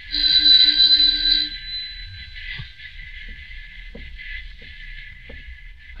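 A doorbell sound effect in an old radio drama rings once, steadily, for about a second and a half. It is followed by faint, evenly spaced footsteps, someone approaching from inside the house, over the recording's hiss.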